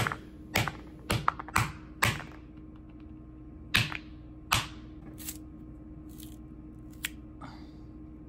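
Claw hammer striking a hard molded paper-pulp (recycled cardboard) part on a concrete floor: sharp knocks, four in quick succession in the first two seconds, then three more spread out and a faint tap near the end. The part breaks under the blows.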